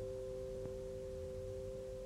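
A quiet passage of orchestral music: two notes held steady together.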